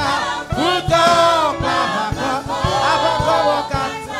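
A gospel worship choir singing a slow song together into microphones, several voices at once over some light backing music.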